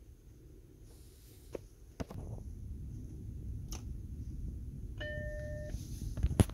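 Macintosh Plus restarting: two sharp clicks, then a low hum that comes up as the machine powers on, and about five seconds in the Mac's single startup beep, a steady tone lasting under a second. It is the start of an attempt to boot from a SCSI2SD adapter.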